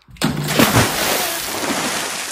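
Water splashing and sloshing in a plastic tub as a child's hand plunges in among toy cars. It starts suddenly about a quarter second in and slowly dies away.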